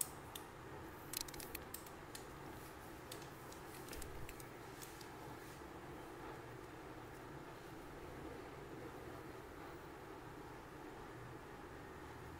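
Hairdressing scissors snipping through hair: a scattering of sharp snips in the first five seconds, then only a steady faint room hum.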